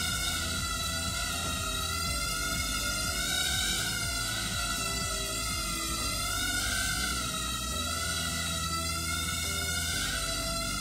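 Background music with a steady beat, over the high, thin whine of a micro quadcopter's tiny motors and propellers. The whine wavers up and down in pitch as the drone hovers and moves.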